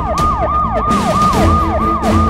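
Electronic siren in a fast yelp, each cycle snapping up in pitch and sliding down, about three times a second, over a low pulsing bass.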